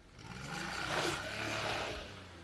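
Small minivan pulling away hard on a dirt road, its engine revving and its tyres scraping and throwing up dirt. The sound swells quickly, is loudest around the middle, and fades as the van moves off.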